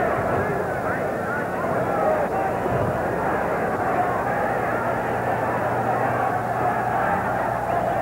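Boxing arena crowd noise: a steady din of many voices talking and shouting at once, with a constant low electrical hum from the old film soundtrack underneath.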